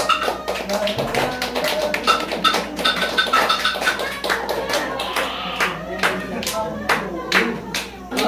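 Live ondo-style song with sharp rhythmic hand claps, about three to four a second, and voices and pitched instruments over them.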